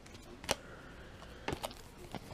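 Faint handling noises of trading cards and a wrapped card pack on a table: a single light tap about half a second in, then a few quick soft clicks around a second and a half in.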